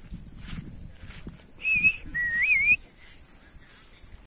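Two short whistled notes that waver in pitch, about a second and a half in; the second is longer, starts lower and rises at its end. Faint high chirps sound in the background.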